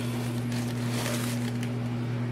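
Soft rustling of tissue paper and cardboard as a sneaker is lifted out of its shoe box, over a steady low background hum.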